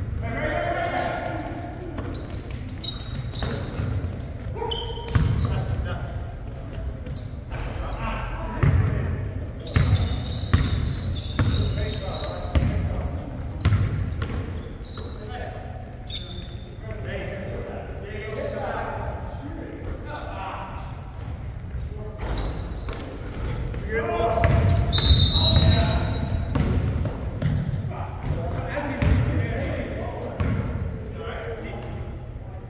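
Basketball game in a large gym: a ball bouncing on a hardwood court, with players' voices calling out and the echo of the hall. A short high-pitched squeal is heard about 25 seconds in.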